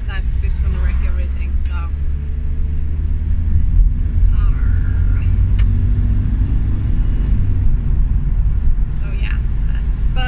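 Steady low engine and road rumble heard from inside the cab of a moving vehicle.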